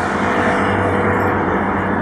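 Steady low rumble of motor-vehicle engine and traffic noise, even in level with no distinct events.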